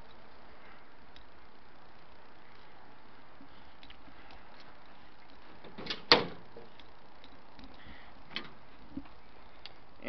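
Steady faint background hiss, broken by one sharp knock about six seconds in and a few fainter ticks.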